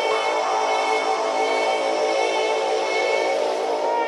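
Techno track in a breakdown: layered, sustained synthesizer tones held steady, with no kick drum or bass.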